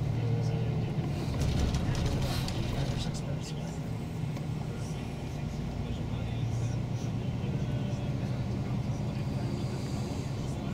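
Inside a moving shuttle bus: a steady low engine drone and road noise, with a cluster of light rattles about two to three seconds in.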